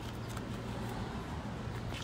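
A steady low hum under even background noise, with a few faint ticks.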